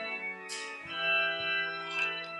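Organ playing sustained chords that change about once a second, with a short hiss about half a second in.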